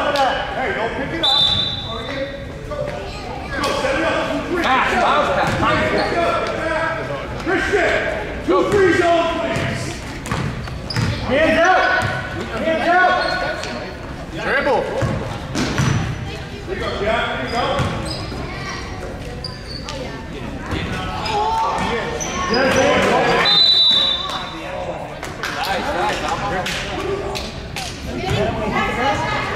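A basketball bouncing on a gym floor during a youth game, with voices of players and spectators calling out in an echoing gymnasium.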